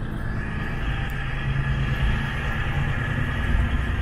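Steady road and diesel engine noise inside a semi-truck's cab at highway speed.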